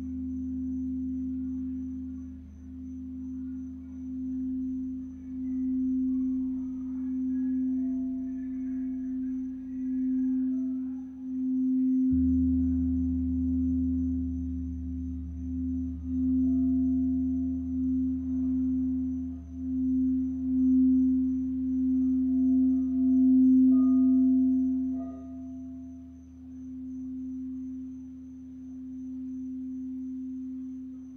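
Large crystal singing bowl sung by circling a mallet around its rim: one steady low tone that swells and wavers in loudness. A deeper hum underneath grows stronger about twelve seconds in.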